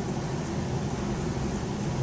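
Steady room background noise: a low hum with an even hiss, and no distinct sound from the divider being lifted out of the water tank.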